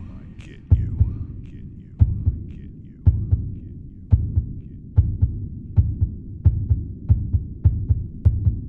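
Heartbeat sound effect: paired low thumps over a steady low drone, starting more than a second apart and quickening to about two a second by the end.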